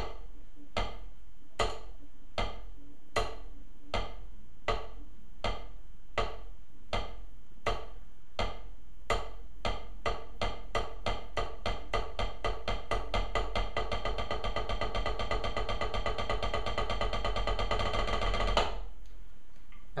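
Wooden drumsticks on a rubber practice pad playing a single stroke roll, right and left hands alternating. It starts with slow, even strokes less than a second apart and gradually speeds up into a fast, even roll that stops suddenly about a second and a half before the end.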